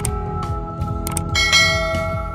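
Subscribe-button sound effect over background music: a sharp mouse click near the start, then a bright bell chime about one and a half seconds in.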